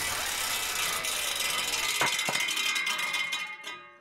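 Closing logo sting: a rattling, noisy music-like sound effect with two sharp knocks about two seconds in, then a ringing tail that fades out near the end.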